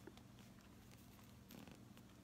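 Near silence: faint low room hum.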